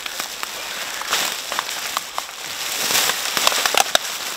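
Plastic rubbish sacks rustling and crinkling under a gloved hand as litter is handled into them, a dense crackle with many small sharp clicks that grows louder toward the end.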